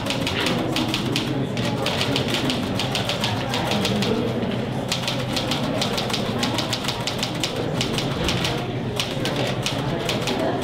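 Rapid typing on a keyboard: quick runs of key clicks a few seconds long, broken by short pauses, over a low room murmur.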